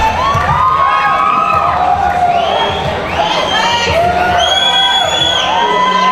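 Fight crowd cheering and yelling, with several long drawn-out shouts rising and falling over one another.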